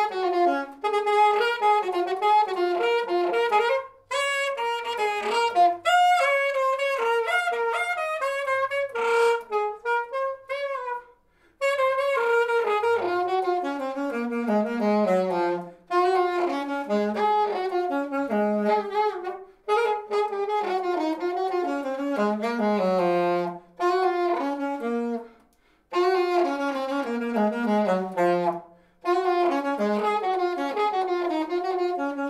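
Solo saxophone playing an unaccompanied melody in short phrases, with brief breath pauses between them; several phrases fall away to a low held note.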